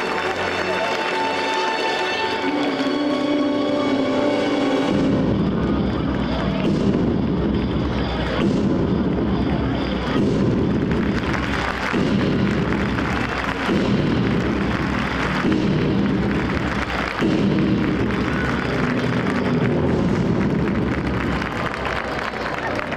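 Performance soundtrack music played loud over an outdoor sound system. It opens with held, sustained notes, then about five seconds in a heavy pulsing beat with deep booming bass takes over.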